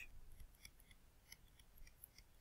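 Near silence with faint, scattered light ticks of a stylus tapping and scratching on a tablet screen while writing.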